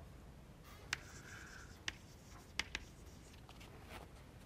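Faint scratching of chalk on a blackboard as a word is written, with a few sharp clicks about one, two and two and a half seconds in.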